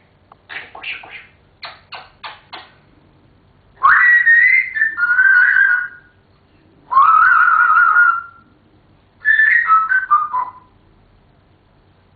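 African grey parrot making a quick run of short clicks and chirps, then three loud whistles: the first sweeps up and wavers, the second warbles, and the third falls in steps.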